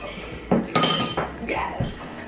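A metal spoon dropped into a glass of milk, clinking against the glass twice in the first second, the second clink ringing briefly.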